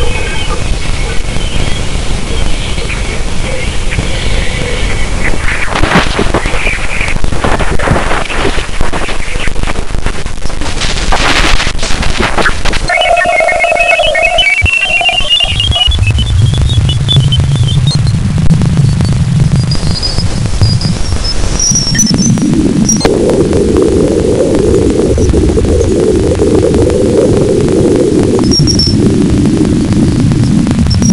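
Radio emissions near Jupiter's moon Ganymede, recorded by a spacecraft's plasma-wave instrument and converted to sound. They give an eerie electronic hiss and crackle with whistling tones. Through the middle a series of tones climbs steadily in pitch, and there is an abrupt shift about two thirds of the way in to a lower, rumbling noise.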